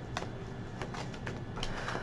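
Cards being handled and shuffled: a few faint, soft clicks and flicks over a low room hum.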